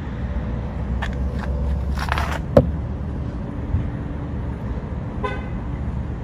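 Phone held against window glass: a steady low outdoor rumble of passing traffic and handling noise, a few scrapes, and one sharp knock about two and a half seconds in as the phone strikes the glass. A brief toot, like a car horn, comes near the end.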